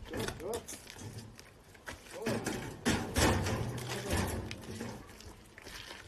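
Short snatches of men's voices with a few knocks and clatters, louder for a second or so near the middle.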